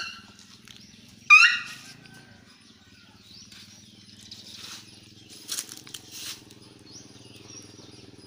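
Asian elephant giving two short, high-pitched squeaks, one right at the start and a louder one about a second in, calling for the ice it is being offered. A low steady hum and a few faint rustles follow.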